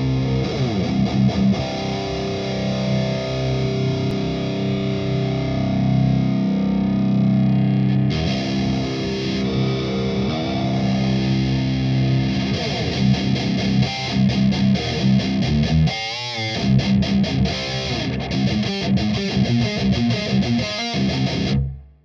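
High-gain distorted electric guitar in drop C, played through a simulated Mega 4x12 Blackback cabinet miked with a 57 and a 121 ribbon, one mic's phase reversed: ringing chords for the first several seconds, then fast rhythmic riffing that stops just before the end. The phase-cancelled mic pair makes it sound awful, with subby lows, honky mids and harsh highs.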